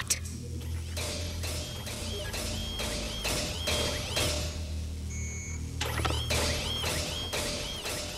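Cartoon soundtrack of a walking robot: a regular run of metallic clanking steps, about two or three a second, each with a short chirp, over a low droning music bed. The steps stop briefly a little after four seconds in for a short electronic beep, then start again.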